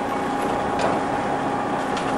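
Hydraulic lift of a bin trailer's tilting deck running as the deck rises: a steady mechanical hum with a constant tone.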